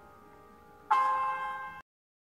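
Bell-like ringing tones from an interactive sound sketch: one fades away, then a second is struck about a second in and rings briefly before cutting off abruptly into silence.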